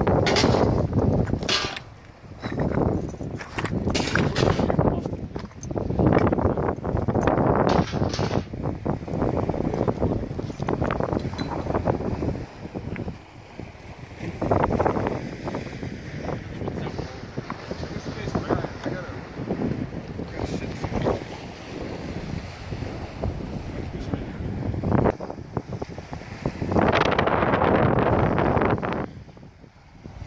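Gusty wind buffeting the microphone in uneven surges, with crunching from footsteps on loose stones and rubble.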